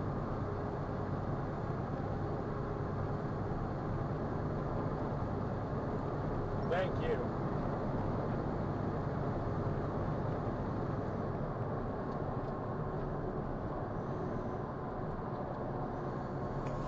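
Steady drone of a semi truck's engine and tyre noise, heard inside the cab at highway speed. A short, higher-pitched sound cuts in briefly about seven seconds in.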